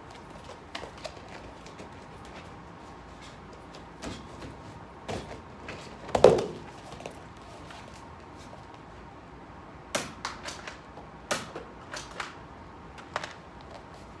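Scattered knocks and thumps of a person jumping off a stack of tires and dive-rolling on a rubber gym mat, the loudest thump about six seconds in. From about ten seconds in come a handful of sharp clacks, roughly a second apart, from a pump-action Nerf blaster being worked and fired.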